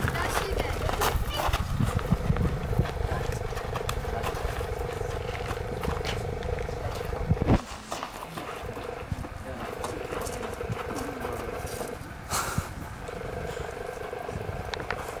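Indistinct voices of children and onlookers at an outdoor game, over a steady hum that breaks off a few times. Wind rumbles on the microphone for the first half and stops abruptly about halfway through.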